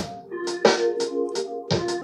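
Beat playing back from the BandLab editor: a held organ-like keyboard chord over a quick pattern of drum hits. The track runs through an overdrive effect with its highs cut back on an equalizer to tame the crunch.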